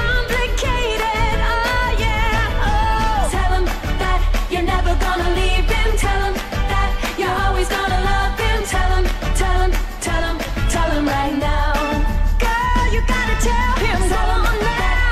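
A 1960s pop song playing: a lead singer's wavering melody over a steady beat and bass.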